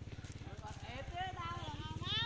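A person's voice speaking quietly from about half a second in, over a steady, rapid, low pulsing hum in the background.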